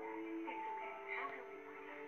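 Soft film score with long held notes sounding together, under a brief line of dialogue, played from a screen.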